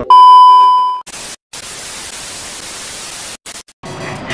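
Television test-card sound effect: a loud, steady beep for about a second, then a hiss of TV static that breaks off in a few stutters near the end.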